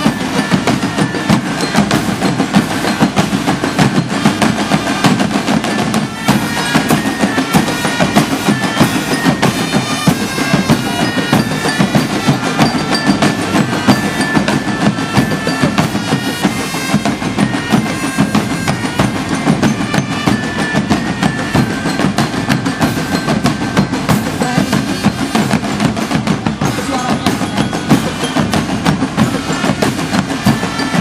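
Marching drum band playing: rapid snare-drum patterns and rolls over bass-drum beats, with melodic notes heard over the drums from about six seconds in to about twenty.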